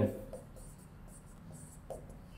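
Marker pen writing on a whiteboard: faint scratchy strokes with a couple of small ticks as letters are formed.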